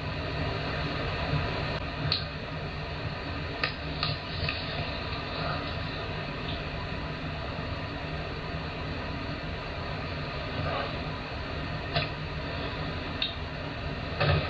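Steady background hiss with a few faint, brief clicks scattered through it.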